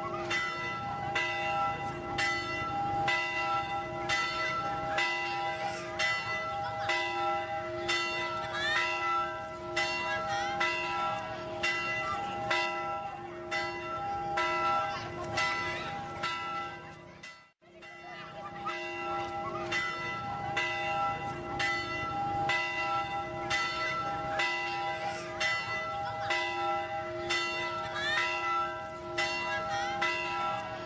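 Church bells ringing, several pitches struck in a steady repeating pattern of about two strokes a second. The ringing cuts out briefly just past halfway, then resumes.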